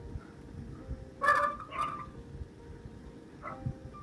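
A bird gives two short, harsh calls about a second in and a fainter third one near the end. Faint sustained background music tones run underneath.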